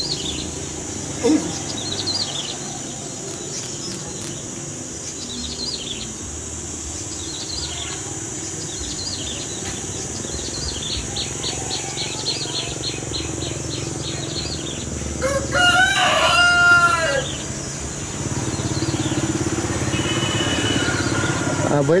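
A rooster crowing once, a single drawn-out call a little past the middle that is the loudest sound, with small birds chirping faintly and high-pitched on and off over a steady low background hum.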